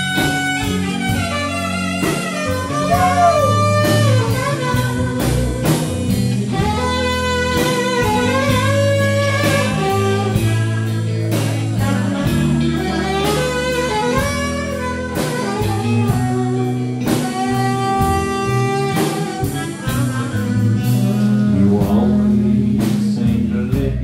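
Instrumental break in a country song, with no vocals: guitar and saxophone lines over drums and bass guitar.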